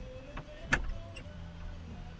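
A sharp click about three-quarters of a second in, over a steady low hum.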